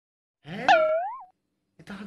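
A short cartoon-style sound effect inserted in editing: one fast upward pitch sweep that levels off and turns up again at the end, lasting under a second.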